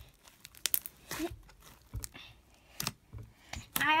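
A large, soft slime being kneaded and pressed by hand in a plastic tub, giving scattered small crackling clicks and squelches.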